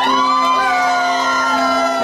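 Electric stage keyboard holding a low note, with higher tones gliding up at the start and then sinking slowly over it, as a song's opening.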